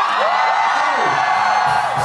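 Live hip-hop concert in a hall: music from the stage with the crowd cheering and whooping.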